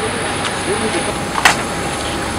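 Steady engine noise with a thin high whine running through it, with faint voices and one short clatter about one and a half seconds in.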